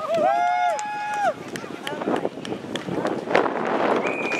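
A long, drawn-out shout lasting about a second near the start, followed by a jumble of further voices and a few sharp knocks.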